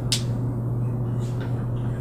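One sharp click just after the start, from a switch on the control panel of a portable air-sampling vacuum chamber, over a steady low hum. The chamber's pump is not yet heard running.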